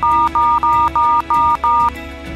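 Touch-tone keypad of a desk telephone being dialed: six quick dual-tone beeps in a row, each about a quarter second long and all the same pitch.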